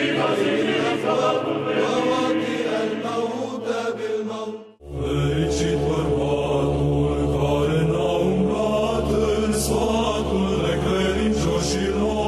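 Church chant sung over a steady low held drone. It breaks off about five seconds in, and a new passage with a deeper, louder drone begins.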